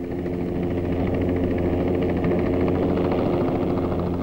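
Light helicopter running steadily: a turbine hum with a fast, even rotor pulse, growing slightly louder in the first second or so.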